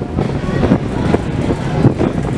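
Loud, steady low rumble aboard a ferry underway, with wind buffeting the microphone. A few short knocks sound about once every half second.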